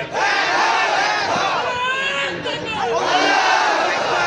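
A man's voice, amplified through a loudspeaker, shouting in long, rising and falling sung phrases in the impassioned style of a waz sermon, with the sound of a crowd.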